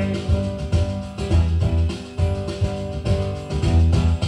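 Instrumental backing music of the song between sung lines: a steady beat over a bass line.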